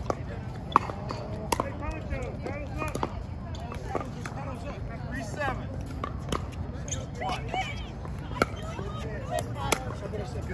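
Sharp pops of pickleball paddles striking a plastic ball, irregularly spaced through a rally, over voices of players talking on the surrounding courts.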